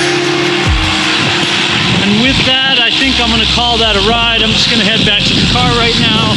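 Background music ending just under a second in, then wind rumbling on the microphone of a camera on a moving road bicycle. Over it a man's voice comes and goes, partly drowned out.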